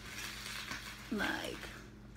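A woman's voice, hesitating: a breathy sound for about a second, then one drawn-out word.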